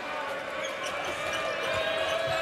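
A basketball being dribbled on a hardwood court over the steady murmur of an arena crowd. A thin, steady held tone joins about halfway through.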